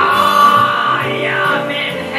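Live jazz-blues duo: a woman sings one long note into a microphone, bending in pitch about halfway through, over acoustic guitar accompaniment.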